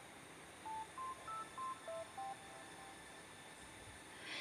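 A short electronic melody of about seven brief, plain beeps at different pitches, played over about a second and a half, over a faint hiss.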